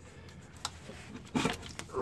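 Gloved hand unscrewing a spin-on air dryer desiccant cartridge from its housing: faint rubbing and handling noise with a single sharp click about a third of the way in.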